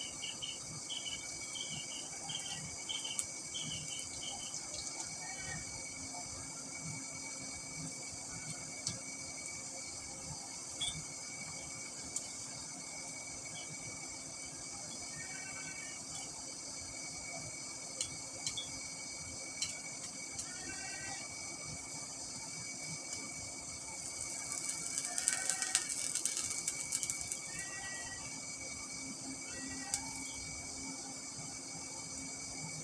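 Steady high-pitched insect chorus with a faint steady hum, short chirps now and then and a few light clicks, and a louder burst of crackling noise from about six seconds before the end for several seconds.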